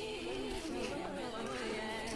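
A voice in the background music track, its pitch wavering up and down in a continuous melody line.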